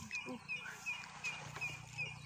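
A bird repeating a short, high chirp about three times a second.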